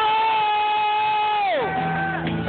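A long, loud held "whoo" from a voice over live band music. It keeps a steady pitch, then slides sharply down near the end into a lower note.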